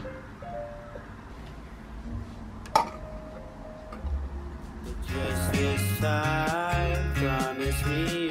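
Background music, soft at first and fuller and louder from about five seconds in, with a single sharp click about three seconds in.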